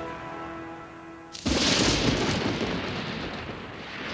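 A held music chord fades, then about a second and a half in a sudden loud thunderclap breaks and rumbles away, opening the lightning section.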